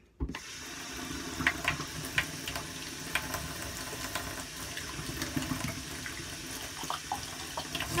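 Bathroom sink tap turned on and running steadily, water running into the basin, with a few light clicks and knocks. The water is being run warm to fill a baby bottle.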